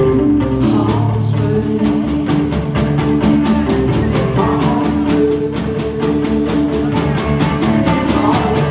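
Live rock band playing: electric guitar, bass guitar and a drum kit keeping a steady beat on the cymbals, with a sung vocal over it.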